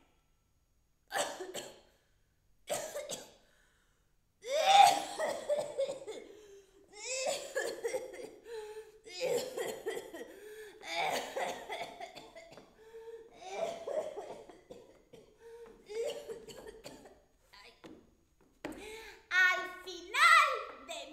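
A woman coughing and letting out wordless, broken cries: two short bursts in the first few seconds, then a nearly continuous string of strained vocal outbursts from about four seconds in.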